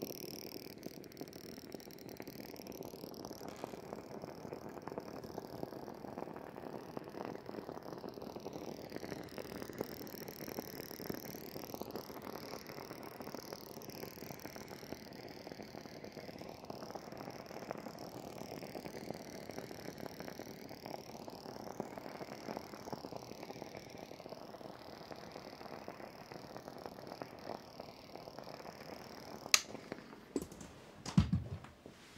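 Facial steamer running, a steady hiss of steam with a fine crackle, used to soften the beard before a shave; its tone shifts slowly every few seconds as it is moved. A sharp click near the end.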